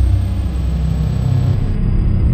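Cinematic logo-reveal sound effect: a loud, deep, steady rumble with a thin high tone held above it, the high part changing about one and a half seconds in.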